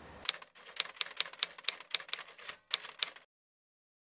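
Typewriter keystroke sound effect: a quick, irregular run of key clacks, about seven a second, that cuts off suddenly a little over three seconds in.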